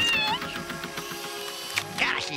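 A short, high-pitched cartoon-voice cry ("Ah!") right at the start, followed by background music with sustained notes.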